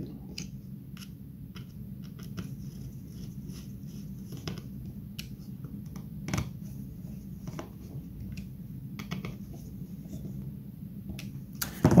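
Small screwdriver tightening M2.5 screws into the standoffs of a Raspberry Pi board: faint scattered ticks and scrapes, with one louder click about six seconds in, over a low steady hum.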